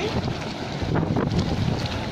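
Wind buffeting the microphone over sea water lapping and splashing at the surface, with a few short splashes about a second in.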